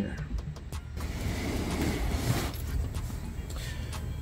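Background music with a steady bass line. A soft rushing noise swells in about a second in and fades before the end.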